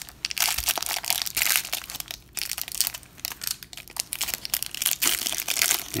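Plastic cellophane wrap on a pack of baseball cards crinkling and crackling as fingers pick at it and peel it open, an irregular run of many small crackles.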